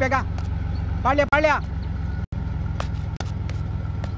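A bus engine idling with a steady low rumble, while men's voices call out briefly at the start and about a second in. The sound drops out for an instant just after two seconds.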